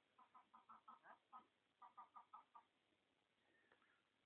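Faint calls from domestic fowl: two quick runs of short, evenly spaced notes, about five a second, with a brief pause between the runs.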